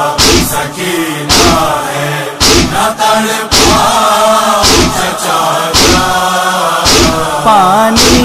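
Voices chanting a nauha, a Shia lament, kept in time by heavy chest-beating (matam) thumps about once a second.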